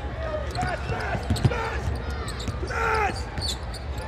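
Basketball being dribbled on a hardwood court, a few irregular thumps over the low hum of a large arena, with short shouted voices among them.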